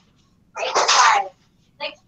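A child sneezing once: a single sharp, noisy burst ending in a short falling voiced tail.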